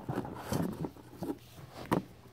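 Paper-wrapped rolls of pennies being handled and set down: soft rustling and light knocks, with one sharper click near the end.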